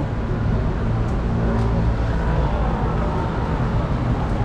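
Steady low rumble of city street noise, with no voice standing out.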